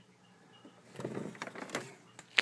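A quiet first second, then handling noise: irregular scraping and rubbing with a few sharp clicks, as things are moved about and the camera is shifted.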